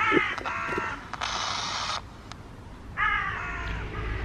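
Panabox ghost box, a modified Panasonic FM-AM radio, sweeping through stations. It gives short harsh, caw-like squawks from its speaker at the start and again about three seconds in, with a burst of hiss between them about a second in.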